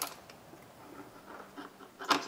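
Faint, scattered light clicks of a ratchet and socket tightening the 15 mm drain plug on a transmission pan.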